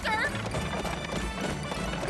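Horse galloping, hooves clattering in a quick, even rhythm under background music, as a cartoon sound effect. A woman's high scream trails off right at the start.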